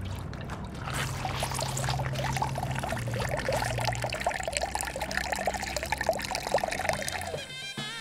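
A thin stream of liquid pouring into a metal basin already full of frothy liquid, a steady splashing trickle, over a low steady musical drone. Near the end the pouring stops and a woodwind melody begins.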